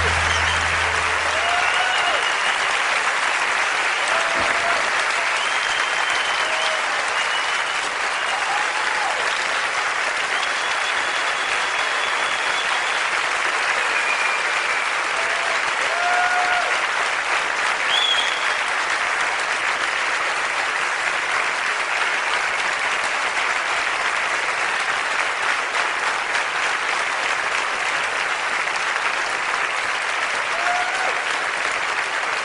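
A live concert audience applauding and cheering at the end of a song, with a few whoops and whistles. The band's last low note dies away about two seconds in.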